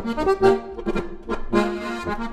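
Accordion music playing a traditional-style tune, with short notes and chords changing several times a second.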